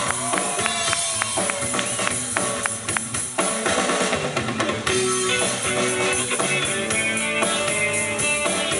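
Live rock band playing: drum kit with electric guitar and bass guitar. The drums lead at first, and the full band comes in denser about three and a half seconds in.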